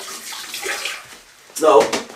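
Water running from a kitchen tap, a steady hiss that dies away about a second in, then a man's voice near the end.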